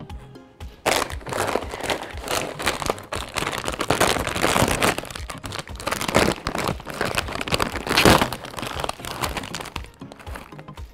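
A plastic snack bag crinkling and being torn open, with sharper rips about six and eight seconds in, over background music.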